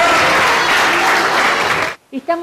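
Audience applauding, a dense steady clapping with some voices mixed in, cut off suddenly near the end.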